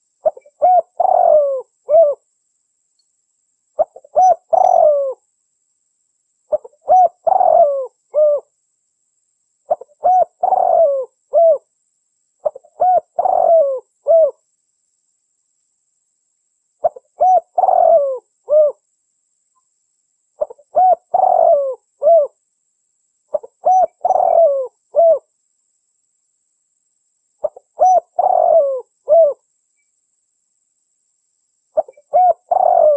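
Spotted dove cooing: nine repeated phrases of several coos each, about one every three seconds, with a longer pause midway.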